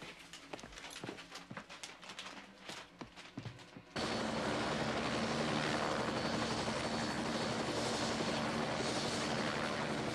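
Faint irregular clicks and knocks, then, about four seconds in, an abrupt cut to a helicopter running, loud and steady.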